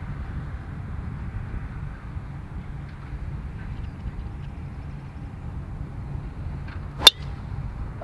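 A golf driver strikes a teed-up ball once, about seven seconds in, with a single sharp crack over a steady low background noise. It is a well-struck drive.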